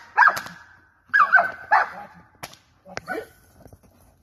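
A German Shepherd barks hard and fast, about five barks in the first two seconds, as it lunges on the leash at an approaching man in personal-protection work. Two sharp cracks follow before the barking quiets.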